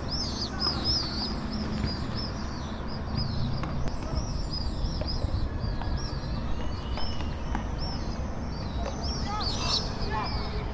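Many short, high chirping calls from birds flying around in the sky, coming thick and fast throughout and densest near the end, over a steady low background rumble.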